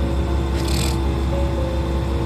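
Steady low hum inside a stationary train carriage, with sustained background music over it and a short hiss a little under a second in.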